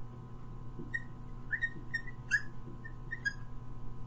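Dry-erase marker squeaking against a whiteboard while a word is written: about seven short, high chirps over two seconds.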